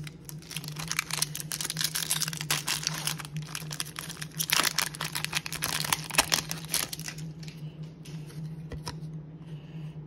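Baseball card pack wrapper crinkling and tearing as it is pulled open by hand, loudest about halfway through, then dying down to a few light clicks near the end.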